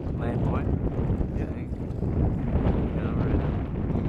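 Wind buffeting the microphone, a steady low rumble, with a few brief snatches of voices.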